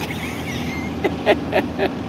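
Street traffic noise from a busy city street, with a man laughing in four short bursts in the second half.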